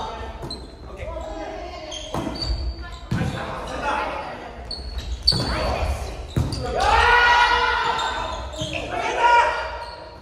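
Volleyball rally in a reverberant gym: sharp slaps of the ball being bumped, set and hit, shoes squeaking on the wooden floor, and players calling out, with a long loud call about seven seconds in.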